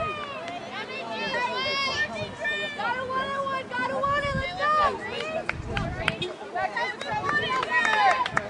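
Several voices shouting and calling out, overlapping one another throughout, as players and onlookers do at a soccer game.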